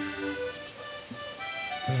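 Live band music at a break in the drumming: a few held, ringing notes step from one pitch to the next, and a low note slides near the end as the band comes back in.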